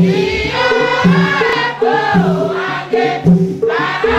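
A large choir of women singing a Tiv-language NKST worship song together. Beneath the voices, low notes step in a steady repeating pattern.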